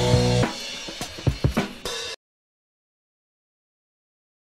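Short drum-led music sting: a few loud drum hits with ringing pitched notes, cutting off abruptly about two seconds in.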